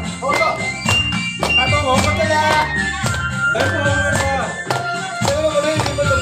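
Folk music: a voice singing a wavering melody over a steady, regular drum beat, with some long held notes underneath.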